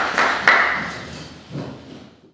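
Audience applause with a few sharp claps, dying away and fading out over the last second and a half.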